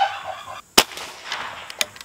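A single shot from a .22 caliber pre-charged pneumatic air rifle: one sharp crack about three-quarters of a second in, followed near the end by a couple of faint clicks.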